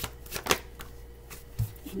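Tarot cards being shuffled by hand: a few sharp card slaps and flicks, the loudest about half a second in.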